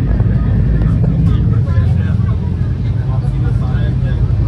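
Steady low rumble of an express passenger train running, heard from inside the coach, with faint, indistinct passenger voices in the background.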